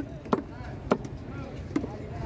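A large knife chopping through fish on a wooden chopping block: about four sharp, irregularly spaced chops.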